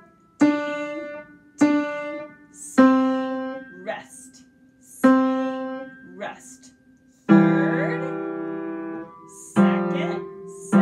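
Upright piano playing a slow beginner exercise of single notes and two-note intervals: about six separate strikes, each left to ring and fade, with short gaps for rests. A fuller chord sounds about seven seconds in.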